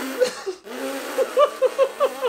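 Breathy, wheezing laughter from a man, broken into rapid short pulses in the second half.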